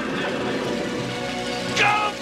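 Heavy rain, a steady hiss, under held notes of background music. Near the end a brief loud swooping tone cuts in.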